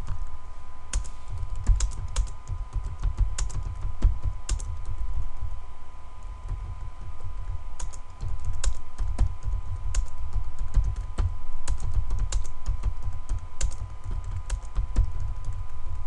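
Typing on a computer keyboard: quick, irregular runs of keystrokes with a short lull about halfway. A faint steady tone runs underneath.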